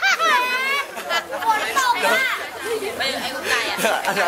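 A boy laughing loud and high-pitched in the first second, then children and adults chattering.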